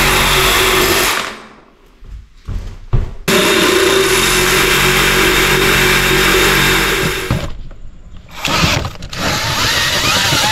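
A loud, steady motor-like running sound that cuts out suddenly twice, with a few sharp clicks in the quieter gaps.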